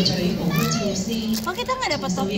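Several young voices talking over one another in lively chatter.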